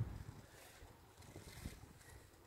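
Faint, uneven wind rumble on the microphone, with a soft tick about one and a half seconds in.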